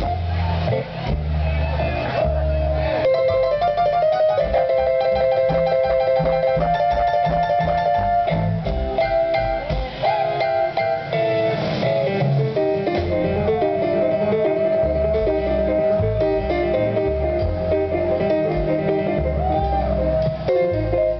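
A live blues band playing an instrumental passage: upright bass plucking a steady rhythm with drums, under a lead instrument holding long, sometimes bending notes.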